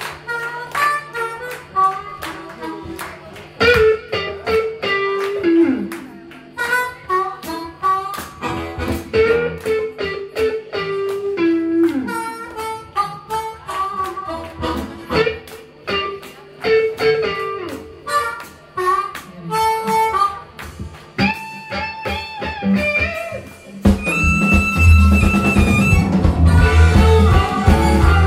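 Blues harmonica solo played live over a band of electric guitars, keyboard and drums, with several notes bent downward in pitch. About two seconds before the end the whole band swells louder.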